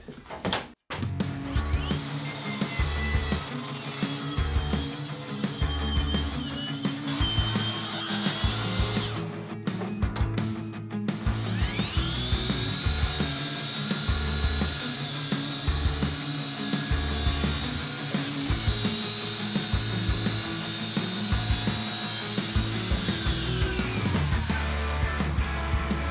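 A Makita twin-battery cordless sliding miter saw spins up with a rising whine, runs steadily while cutting plywood panels to length, and winds down near the end. In the first third another power saw runs at a wavering pitch. Background music with a steady bass beat plays throughout.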